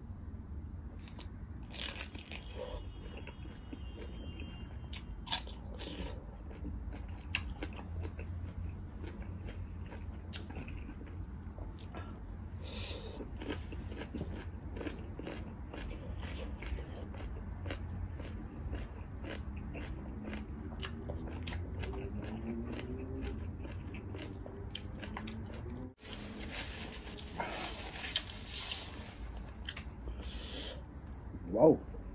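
Close-miked eating: chewing and biting with many small crisp mouth clicks, over a steady low hum. Near the end there is a brief break in the sound.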